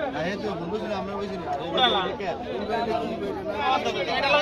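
Several people talking over one another: a steady babble of overlapping voices.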